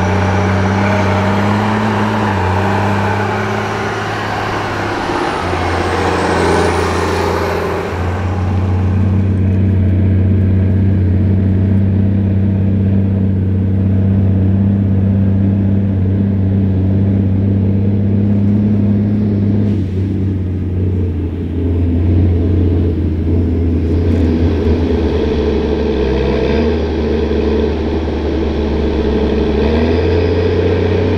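Big New Holland farm tractor diesel engines running steadily, one towing a slurry tanker. A high thin whine dips and rises over the first several seconds.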